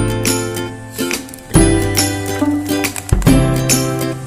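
Background music: a bright tune of plucked notes over a deep bass line that changes about every second and a half.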